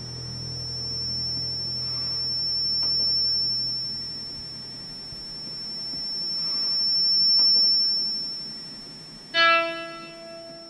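Film soundtrack music: a low drone and slow swelling hiss under a steady high-pitched whine, then a single piano note struck near the end.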